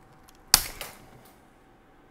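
A 2.5 mm hex driver's tip snaps off under too much torque while an engine-mount screw is cranked down, giving one sharp crack about half a second in, followed by a smaller click.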